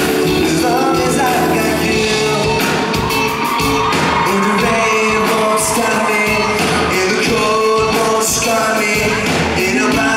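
Live pop-rock song: a male lead singer sings into a handheld microphone over loud, steady band accompaniment.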